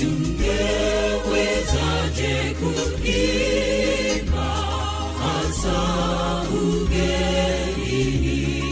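A choir singing a Seventh-day Adventist gospel song. The voices waver with vibrato over low bass notes that change about once a second.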